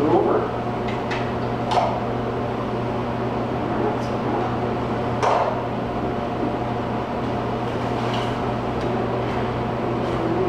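A steady electrical hum with several held tones runs underneath. Over it come a few brief rustling handling sounds as twine is drawn around a bundle of split firewood, about two and five seconds in.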